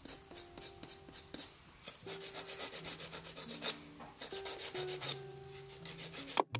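A nail file or buffer rubbing back and forth across a fingernail in quick, even strokes, a few a second, with a brief pause about a second and a half in. This is the natural nail being filed and buffed before Gel-X tips go on.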